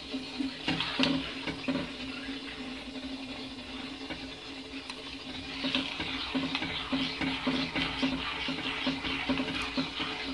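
A metal spoon stirring thick chocolate sauce in a steel pot as it is cooked down to thicken, giving a continuous wet scraping with small clicks against the pot, over a steady low hum.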